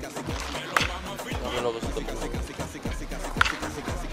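Music with a steady, fast bass beat, over which a baseball bat cracks sharply against a ball twice, a little under a second in and again near the end.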